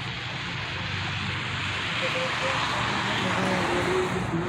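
A car passing on the street, its tyre and engine noise a steady rush that swells gradually.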